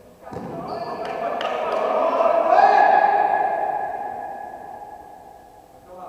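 Several voices shouting together in a large, echoing sports hall, swelling into a long held call at its loudest a couple of seconds in, then fading away. A few short knocks sound near the start.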